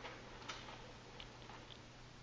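Faint footsteps on a wooden stage floor, a few soft, irregular clicks over a steady low hum.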